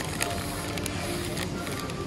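Plastic wet-wipe packets crinkling and rustling as one is pulled out of a stacked display, with two sharp crackles near the start, over background music.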